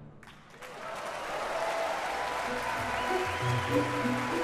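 Audience applause in a concert hall breaking out about half a second in, as the orchestra's last chord rings away. Music with a low bass line comes in under the clapping about two and a half seconds in.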